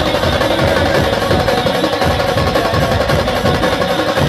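A live band playing loudly: fast, driving drumming with a held melody note over it.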